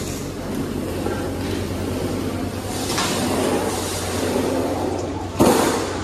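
A single sharp metal clank near the end, from the steel barrel-bolt latch on the pickup's cargo-box door being handled. A steady low hum runs underneath.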